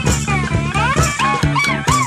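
Electric blues boogie: an electric slide guitar swoops and warbles in gliding pitch bends over a steady drum beat and bass.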